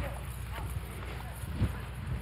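Footsteps of several people walking on a dirt road: faint, irregular steps, with one louder knock about one and a half seconds in.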